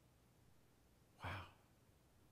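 Near silence with room tone, broken about a second in by one short, low-pitched vocal sound from a man, like a brief sigh.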